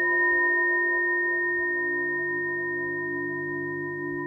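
Singing bowl ringing after a single strike just before, its few steady tones slowly fading; the bell marks the end of a guided meditation sitting.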